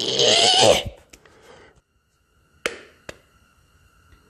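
A man's short vocal "uh", then after a quiet pause two sharp plastic clicks about half a second apart, a spray-paint can's cap being pulled off.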